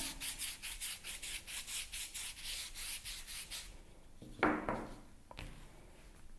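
A wide brush sweeps water across the back of dry watercolour paper lying on a cloth tea towel, in quick scratchy back-and-forth strokes about four a second. The strokes stop after about three and a half seconds, and a second later there is one short, louder sound.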